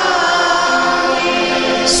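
Catholic liturgical chant sung in Tamil, with long held notes, and a brief sharp tick near the end.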